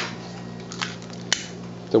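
A long utility lighter being clicked to light an alcohol stove: a couple of soft clicks, then one sharp click just past the middle, over a low steady hum.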